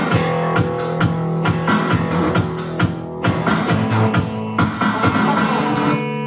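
Live rock band playing loud: guitar chords over a drum kit beating steadily with cymbal hits.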